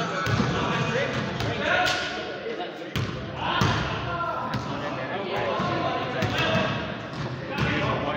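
Basketball bouncing at irregular intervals on a gym floor during a pickup game, heard over players' voices in a large gymnasium.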